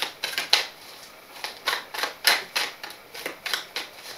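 A deck of tarot cards being shuffled by hand, overhand: quick runs of crisp card slaps and clicks in three bursts with short pauses between.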